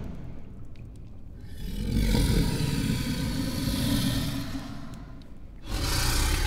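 Film sound effect of a dragon: a long roaring rush of noise over a deep rumble. It swells about a second and a half in and dies away near five seconds, with another burst starting just before the end.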